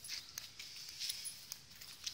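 Faint footsteps on loose gravel and rubble: a few light, short steps over a soft outdoor hiss.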